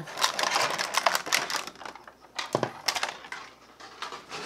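Clear plastic blister-pack tray crinkling and crackling as a toy piece is pulled out of it, with two sharp clicks a little after halfway.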